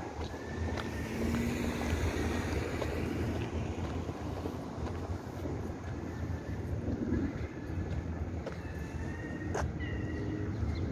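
Street ambience: traffic on a city street under a fluctuating rumble of wind on the microphone, with a single sharp click near the end.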